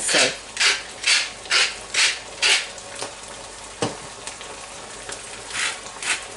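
A hand-held spice mill ground over a pan, about six short crunchy grinding strokes roughly two a second, a single click near four seconds, then a couple more strokes near the end: the sauce being seasoned with salt and pepper. A faint sizzle of the simmering tomato sauce runs underneath.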